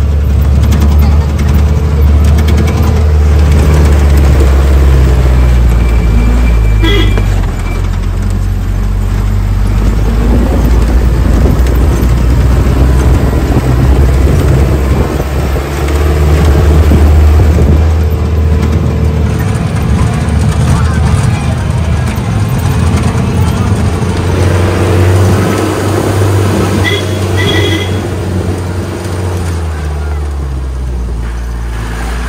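Jeep engine running loudly as it drives a rough hill track, a steady low drone that shifts pitch a few times as it changes speed.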